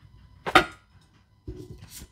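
Tarot cards being handled and set down on a table close to the microphone: one sharp slap about half a second in, then softer knocks and taps near the end.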